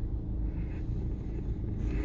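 Low, steady rumble of a car heard from inside its cabin while it idles or creeps forward in slow traffic.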